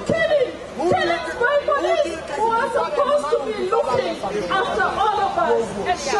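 Several people talking at once, their voices overlapping in close-up chatter.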